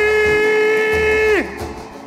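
A singer holds one long "oi!" note over boi-bumbá toada music, with a low drum beat underneath. The note slides down and breaks off about one and a half seconds in.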